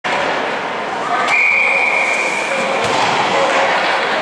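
A referee's whistle blown once: a single steady high tone a little over a second long, beginning with a sharp knock. Under it runs the echoing chatter of the crowd in the ice rink.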